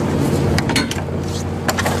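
John Deere 5100E's four-cylinder turbo diesel idling steadily, with a few sharp clicks and knocks about half a second in and again near the end.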